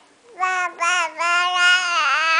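Baby cooing: two short vocal sounds, then a long, fairly steady coo from just over a second in.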